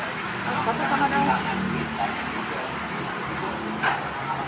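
Indistinct chatter of several people talking over a steady background of street noise, with a short sharp knock near the end.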